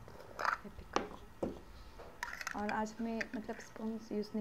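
Plastic screw cap being twisted open on a glass pickle jar: a few short clicks and scrapes in the first two seconds.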